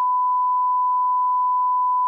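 Television colour-bars test tone: a single steady, high-pitched beep held unbroken at one pitch.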